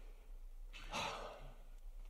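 A single soft breath from a man at the microphone, a short hiss about a second in, during a pause in speech, over a faint steady low hum.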